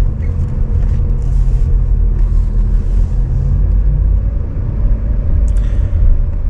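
Car engine and road rumble heard from inside the cabin as the car drives off, a steady low drone.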